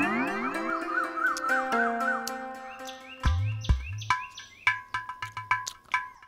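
Background score of synthesized music: held tones with a warbling, chirpy figure, then a bouncing beat of low thuds with short repeated upward swoops from about three seconds in.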